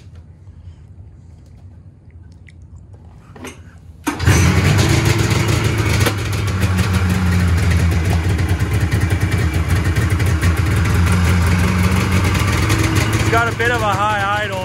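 A 25-year-old Polaris snowmobile's two-stroke engine, pull-started after its carburetors were cleaned, fires and catches about four seconds in, then keeps running loud and steady.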